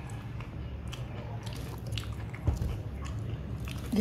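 Biting and chewing crispy breaded fried chicken wings: scattered crisp crunches, the loudest about two and a half seconds in, over a steady low hum.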